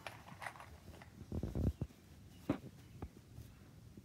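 Handling sounds of a cardboard template and clipped fabric being worked on a padded ironing board: a few soft knocks, then two light clicks.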